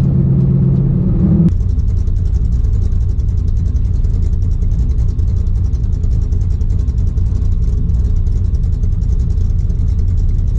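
Ford Falcon GT's V8 engine heard from inside the cabin, a steady drone while driving along the road; about a second and a half in it cuts abruptly to a lower, rougher rumble with a fast, even ticking, the engine running with the car stopped and the door open.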